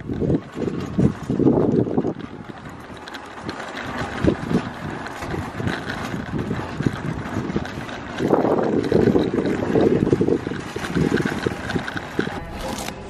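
Shopping cart rolling across an asphalt parking lot: a steady rumble of the wheels with rapid small rattles and knocks from the cart frame, growing louder for a couple of seconds about two-thirds of the way through. Wind buffets the microphone.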